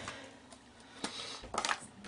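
Faint plastic clicks and taps as ink pad cases are handled and set down on a craft mat: one click about a second in, then a quick cluster of clicks half a second later.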